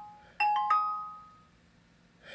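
Windows speaker test sound from a laptop's built-in Realtek speakers: the tail of a falling three-note chime fades, then about half a second in a rising three-note chime rings out and dies away. It is the test tone used to check the speaker output level.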